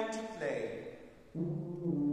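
Wind band playing: a short phrase ends and dies away in the hall's reverberation, then low brass come in with held notes about a second and a half in.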